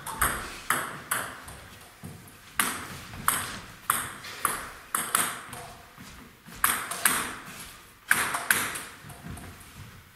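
A table tennis ball clicking off bats and the table in a string of sharp, ringing knocks, about one or two a second, with short pauses between runs.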